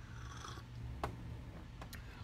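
A man sipping from a mug, a short faint slurp near the start and a sharp click about a second in, over a low steady hum.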